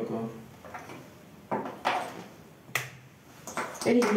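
A few short, sharp clicks and taps of small objects being handled on a workbench, one of them a sharp click a little before three seconds in, between brief bits of speech.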